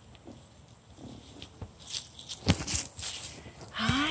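A kitten rolls and scuffles in grass and dry leaves, with soft rustles and a few light taps. Near the end it gives one meow that rises and then falls in pitch.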